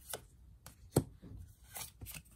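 Tarot cards being handled and laid down on a table: a soft click near the start, a sharp card tap about a second in, and a brushing slide of card on card near the end.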